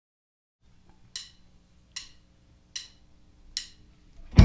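Drumsticks clicked together four times, evenly spaced about 0.8 s apart, counting the band in. A faint steady amplifier hum sits underneath.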